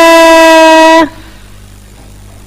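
A woman's voice holding a long, loud, steady 'haaai' on one pitch as a farewell call, cut off suddenly about a second in, then a faint low hum.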